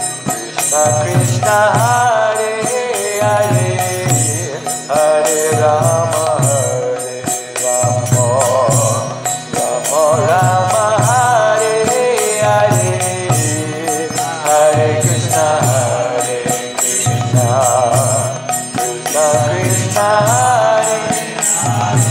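Kirtan chanting: a voice sings a devotional mantra in wavering phrases of about two seconds each, over a steady percussion beat and a low tone that pulses with each phrase.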